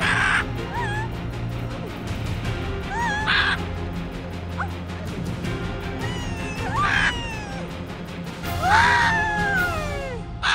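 Large macaw giving harsh, loud squawks four times while flying, over background music.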